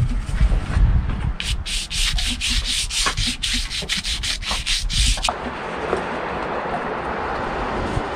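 A paintbrush scrubbing watercolour onto paper in quick scratchy strokes, about three or four a second, for some four seconds. After about five seconds it gives way to a steady hiss.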